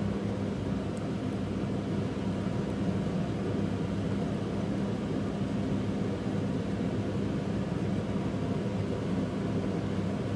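A steady mechanical hum with a low rushing noise, like a motor or fan running, holding an even level throughout.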